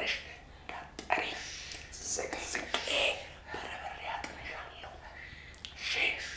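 A man speaking in a loud, hushed whisper, in short phrases broken by pauses.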